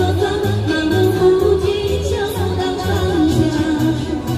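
A woman singing a pop song into a microphone over an amplified backing track with a steady bass beat of about two notes a second.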